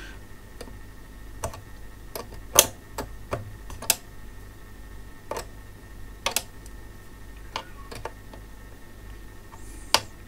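Irregular small metallic clicks and taps, about a dozen, the loudest about two and a half seconds in, as a spanner works the nut and washer onto a copper binding post on an instrument's front panel.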